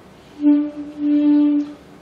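Selmer Series III alto saxophone played softly: a short note, then the same note held for about a second. It is a forced soft tone made by squeezing the embouchure, a 'squeezed sound' rather than a controlled small sound.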